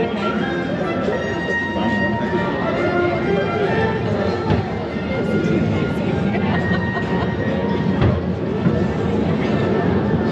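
Music with held notes playing over the indistinct chatter of passengers, with a single knock about eight seconds in.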